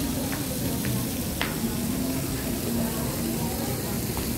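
Outdoor pedestrian-street ambience: a steady hiss with a low murmur of distant voices and a few faint clicks in the first second and a half.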